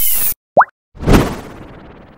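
Logo sting sound effects: a short swish, a quick rising pop about half a second in, then a whooshing hit about a second in that fades away.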